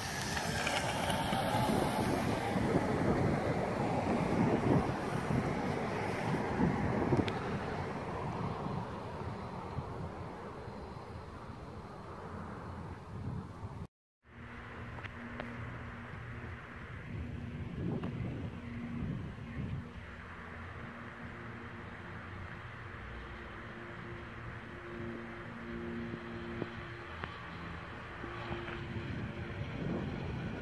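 Electric mountain board with a 36 V 650 W brushed DC motor riding on asphalt: the motor drive and tyres make a rolling rumble, and wind buffets the microphone in the first half. A cut about halfway through gives a moment of silence, then a fainter, steadier hum with a few held tones.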